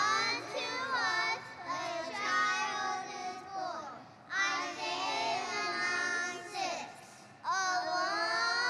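A group of young children's voices singing together in unison, in phrases broken by short pauses about four and seven seconds in.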